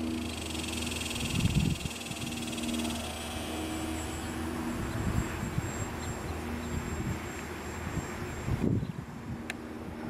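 Electric motor and propeller of a Dynam J-3 Cub radio-control plane flying overhead, a steady high whine that is strongest in the first few seconds. Wind buffets the microphone with low rumbles about a second and a half in and near the end.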